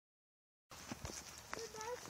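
Faint footsteps clicking on a paved path, a few separate steps, then a brief high-pitched call that rises slightly near the end.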